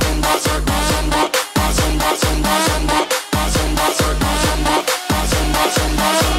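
Electronic dance music with heavy bass and a steady beat, from a nonstop dance mix.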